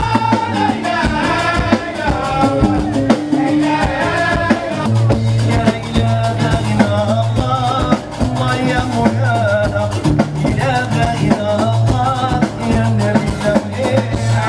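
Live band music played loud at a concert: a voice singing over a deep, repeating bass line and drums.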